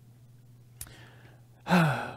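A man's short sigh about a second in, just after a faint click, over a steady low hum. A man's voice starts speaking near the end.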